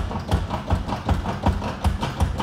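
Hydraulic pump lever of a vintage porcelain barber chair being worked up and down, a regular run of mechanical knocks as the chair's hydraulic base is pumped to raise the seat.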